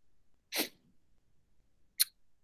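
A single short breath noise close to the microphone about half a second in, followed near the end by a faint mouth tick, in otherwise near silence.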